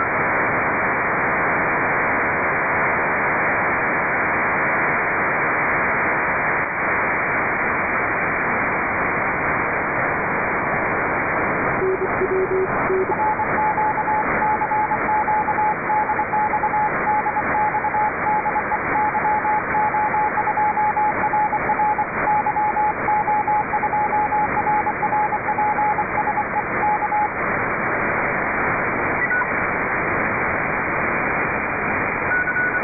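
Shortwave static from an RTL2832 SDR with a Ham It Up upconverter, demodulated in lower sideband near 10.125 MHz in the 30-metre amateur band, its hiss cut off above about 2.5 kHz by the receiver's filter. About 12 seconds in a brief lower tone sounds, then a Morse code signal keys on and off over the static until near the end.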